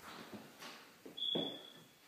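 Footsteps and light knocks on a hard floor, the loudest about halfway through. Near the end a thin, steady high tone sounds for under a second.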